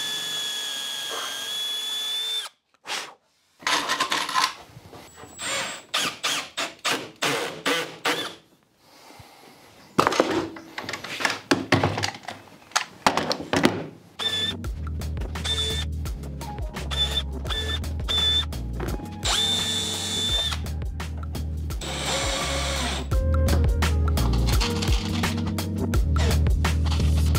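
Cordless drill driving screws into a metal drawer-box side, a steady whine for about two seconds, then a run of quick clicks and knocks as the parts are fitted and clamped. From about halfway, background music with a steady low beat comes in, with short bursts of the drill driving more screws over it.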